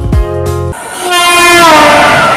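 Background music with a beat, giving way about a second in to a loud train horn blowing over the rushing noise of a passing train, its pitch falling slightly as it goes by.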